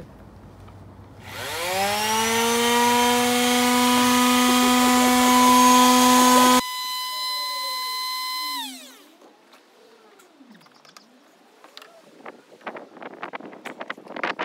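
Electric palm sander switched on, its motor whining up to a steady high hum under a loud rough sanding noise as it runs on a bald head. The noise cuts off sharply and the motor hum winds down about two seconds later. Near the end, a cloth rubbing in short strokes.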